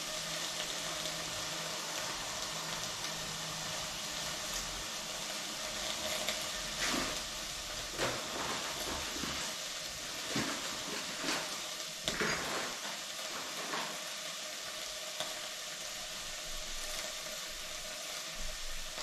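Leek frying in coconut fat in a pot, a steady sizzle with a few short louder crackles now and then.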